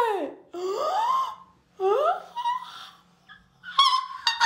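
A young woman whimpering and wailing, in a string of drawn-out cries that rise and fall in pitch, with a short, high cry near the end. She is upset at having her split ends cut.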